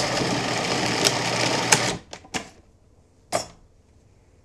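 Food processor motor running as it blends frozen cherries into a gelato mixture, with a few sharp ticks of fruit hitting the blade, then switched off a little under two seconds in. Three short knocks follow.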